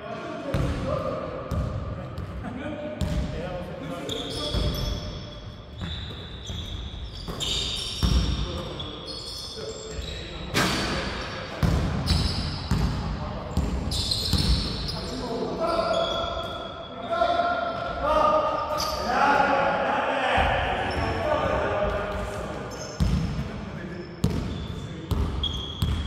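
A basketball bouncing and dribbling on a hardwood gym floor, with repeated sharp strikes that echo around a large hall, mixed with players' voices calling out across the court.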